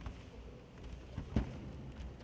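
A karateka thrown or taken down onto a sports-hall floor: light shuffling, then one sharp heavy thud of the body landing about one and a half seconds in.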